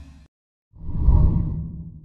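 Logo-animation whoosh sound effects: the tail of one whoosh dies away, then a second whoosh with a deep rumble swells up under a second in and fades out.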